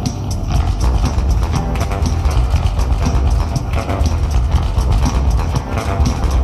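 Bass guitar played with the fingers over a backing track with a steady drum beat.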